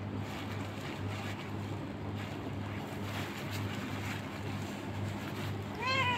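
Faint, steady background hiss with a low, pulsing hum. Right at the very end a cat's meow begins.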